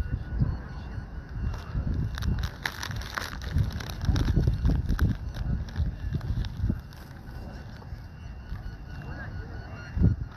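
Low rumble of wind on the microphone with scattered sharp knocks and background voices, over a faint repeating high beep from the beep baseball.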